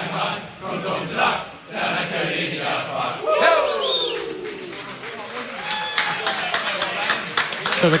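Geelong footballers in their change room finishing the club song together, breaking into a loud shouted cheer about three seconds in, then whooping and clapping near the end, as picked up on a radio reporter's microphone.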